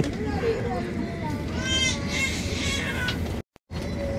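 Passengers' voices chattering, with a brief high-pitched exclamation about halfway through, over the steady low rumble of a high-speed train cabin. The sound cuts out completely for a moment near the end.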